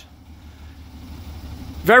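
Acura CL coupe's engine idling: a low, steady rumble. A man's voice cuts in near the end.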